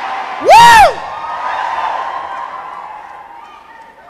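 A preacher's single loud whoop into a microphone about half a second in, its pitch rising and falling. It is followed by a congregation's cheering that fades away over the next few seconds.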